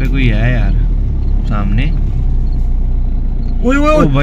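Steady low drone of a car's engine and running gear heard from inside the cabin while driving.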